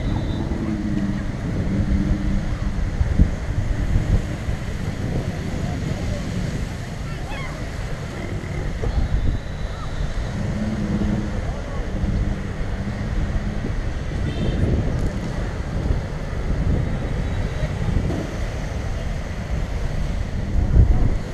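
Wind buffeting the microphone over the wash of small waves breaking on the shore, with faint voices. A low hum comes and goes twice, about a second in and again about ten seconds in.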